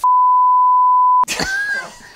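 Steady single-tone censor bleep, just over a second long, that cuts off abruptly and is followed by a man's voice.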